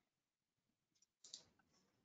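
Near silence, broken by a faint computer mouse click a little past halfway through.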